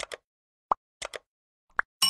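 Sound effects of an animated like-and-subscribe button: two pairs of short mouse-click sounds and two quick pops that rise in pitch, each brief and separated by silence.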